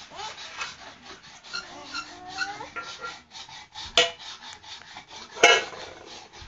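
Metal bowls scraped and rubbed across a hard floor by small children, with irregular rattling and two sharp clanks of metal on metal or floor, the louder one near the end.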